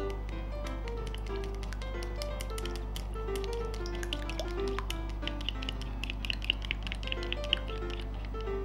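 Wooden chopsticks clicking rapidly against a small glass bowl as a raw egg is beaten, the clicks thickest and loudest near the end. Light background music with plucked guitar-like notes plays throughout.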